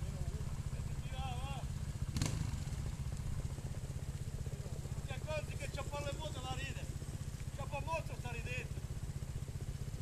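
Trials motorcycle engine idling steadily close by, a low even running with no revving. There is one brief click about two seconds in.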